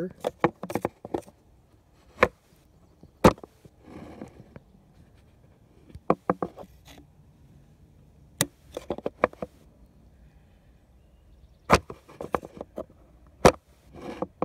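Screwdriver tip clicking and scraping against the shift-linkage clip of a Mercury 15 hp outboard's lower unit as it is pried up. Sharp clicks come at irregular intervals, about a dozen in all, the loudest at about two, three, eight and a half and thirteen and a half seconds in.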